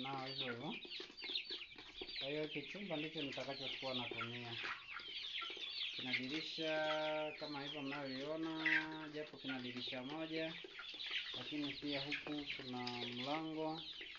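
A flock of young Kuroiler chicks peeping continuously, many short high chirps overlapping. Underneath, a person's voice holds long low notes, like singing or humming.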